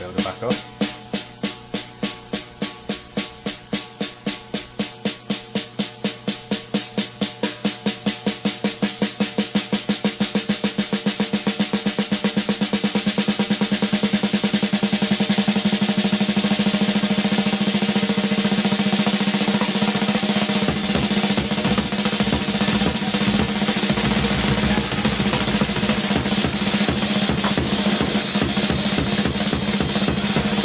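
Snare drum roll played with sticks that starts as separate, evenly spaced strokes about two or three a second and speeds up steadily until the strokes run together into a continuous roll, which is then held.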